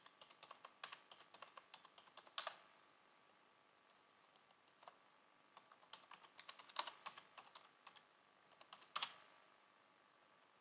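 Faint typing on a computer keyboard: two runs of quick keystrokes with a gap of about three seconds between them, a few harder strokes standing out.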